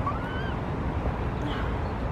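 Steady outdoor background noise, mostly a low rumble, with a faint short rising call or squeak in the first half-second.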